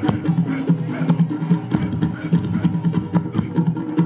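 Traditional Tahitian drumming for a dance troupe: rapid, even drum and slit-drum strikes in a steady rhythm that cut off suddenly at the end.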